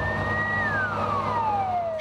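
Fire engine siren holding one high note for about half a second, then winding down in a long falling glide, over the steady hum of a truck engine running.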